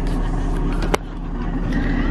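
Cloth rubbing over the camera body and its microphone as the lens is wiped clean, a steady scuffing with one sharp click about a second in. A low, steady car hum runs underneath.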